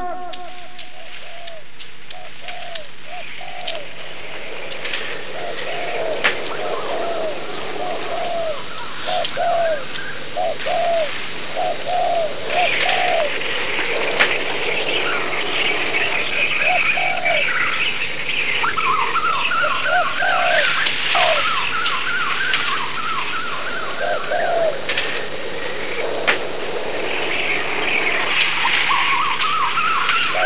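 Bird ambience: doves cooing in short repeated phrases, with other birds chirping. A series of quick rising notes comes in during the second half and again near the end.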